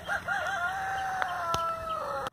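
A rooster crowing once: a few short wavering notes, then one long drawn-out note that sags slightly in pitch.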